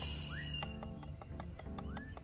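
Quiet background music, with held tones, a light ticking beat and two short rising chirps.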